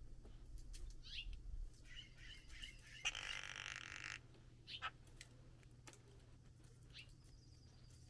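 Faint bird chirps: a few short, high, falling notes spaced a few seconds apart. About three seconds in there is a brief scratchy rustle lasting about a second, over a steady low hum.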